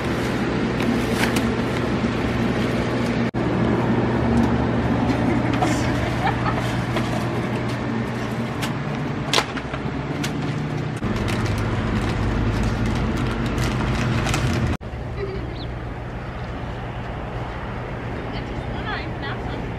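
A steady low mechanical hum, like a vehicle idling, under the crinkle and rustle of plastic grocery bags and food wrappers with scattered small clicks as groceries are repacked. The hum drops to a quieter level near the end.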